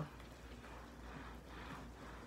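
Faint rustling of handbags being handled and held up to compare their weight, over a low, steady room hum.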